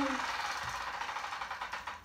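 Spinning prize wheel, its pointer ticking rapidly against the pegs around the rim.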